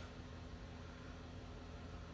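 Faint steady hum of powered machinery, with no change through the pause.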